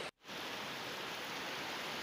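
Steady, faint hiss of heavy rain pouring down, cut off for a split second just after the start.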